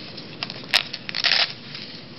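Handling noise as gear is worked out of a black fabric pouch: a sharp crackle about three quarters of a second in, then a longer ripping rasp a little after one second.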